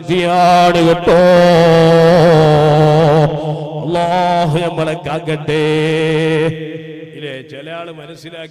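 A man chanting a salawat recitation in long, melodic held notes with wavering pitch. About six and a half seconds in, it gives way to quieter speech.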